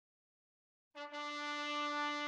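Intro music beginning after a second of silence: a single long held brass note.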